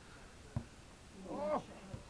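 A single sharp thud of a football being struck, heard at a distance about half a second in, followed about a second later by a short rising-and-falling "ooh" from a spectator.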